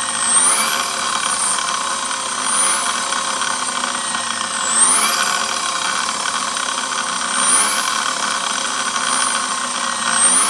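Tesla Model 3 front drive unit's induction motor spinning on the bench under inverter control: an electric whine with a constant high whistle, rising in pitch in short sweeps every two to three seconds as it is given bursts of throttle.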